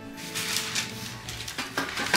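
Soft background music under rustling and handling noises as parchment paper on a baking sheet is moved about.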